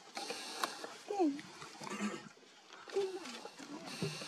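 Quiet human murmurs ('mm') with a faint high hiss behind them.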